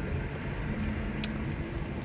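A car driving slowly, heard from inside the cabin: a steady low rumble of engine and road noise, with one short click a little past a second in.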